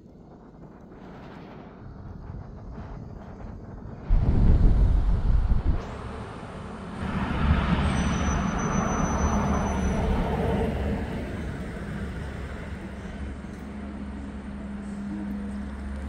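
Road traffic on a city street: a car passes close by, a rush of tyre and engine noise that swells about seven seconds in and fades over the next few seconds, leaving a steady low engine hum. About four seconds in there is a loud low rumble lasting about two seconds.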